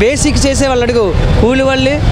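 A man speaking in Telugu, with a low rumble of street traffic behind him.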